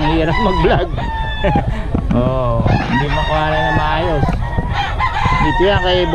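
Several roosters (gamecocks) crowing, their calls overlapping one another.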